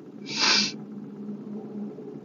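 A person's short, sharp breath through the nose, about half a second long, over a steady low hum.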